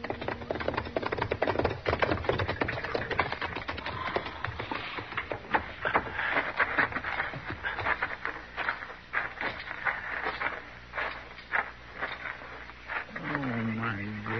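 Radio-drama sound effect of a fire crackling: dense, irregular snaps and pops from a still-burning ranch house and barn.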